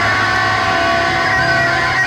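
Live rock music in an instrumental stretch, electric guitar to the fore, playing held, sustained notes over a steady low end.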